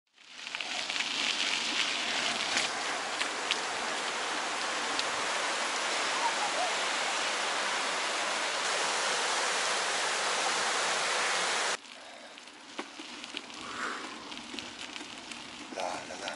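Fast-flowing river rapids rushing, a loud steady hiss of water that cuts off abruptly about twelve seconds in. Much quieter outdoor sound with a few light clicks follows.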